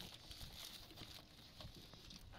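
Near silence: faint background noise with a few soft ticks.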